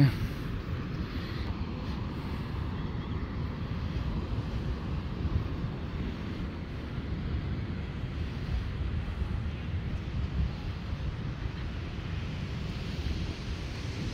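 Wind buffeting the microphone in a steady low rumble, with the rush of ocean surf breaking on the beach behind it.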